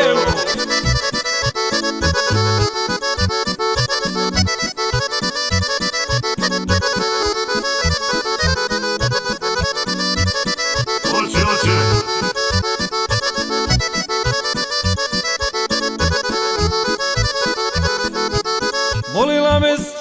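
Instrumental break of a Krajina-style folk song: an accordion plays a fast, busy melody over a steady bass beat. Singing comes back in just before the end.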